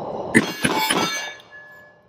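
A low rumbling noise, then two sharp metallic clangs about a third of a second apart, ringing on for about a second before fading, with one faint ringing tone lingering to the end.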